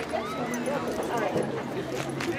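Several voices talking and calling over one another at once, with no clear words: chatter from spectators and players at a baseball game.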